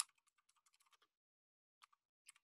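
Faint computer keyboard typing: a quick run of key clicks in the first second, then a single click near the end, as a shell command is typed.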